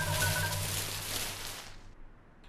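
Cartoon sound effect of a small tree being shaken, its leaves and branches rustling in a noisy rush that fades out near the end, over a few low held musical tones.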